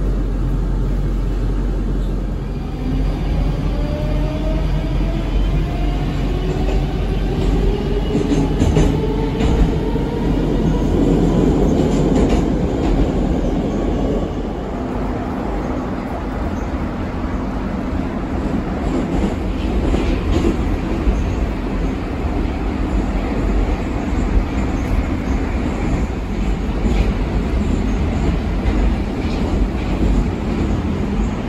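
Interior sound of a Moscow metro 81-740/741 articulated train running. A whine of several tones rises in pitch over the first ten seconds or so as the train gathers speed, over the steady rumble of wheels on rail, with a few faint clicks.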